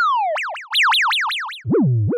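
Krell patch on an Instruo CS-L complex oscillator in VCV Rack playing itself: a string of synth notes, each starting sharply and fading, each at a new random pitch picked as its envelope ends its cycle. A falling tone gives way at about a third of a second to a high note that warbles rapidly up and down as it sweeps down. Near the end a low note drops in pitch.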